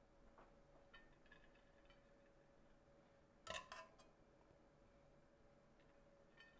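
Near silence over a faint steady hum, broken by a few faint ticks and one short clatter about three and a half seconds in: a large metal spoon knocking on a stainless steel pot as it scoops cooked rice onto a platter.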